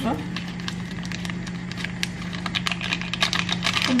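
Paper sachet of baking powder being shaken and flicked over a mixing bowl: a quick run of light taps and paper crinkles, thickest in the second half, over a steady low hum.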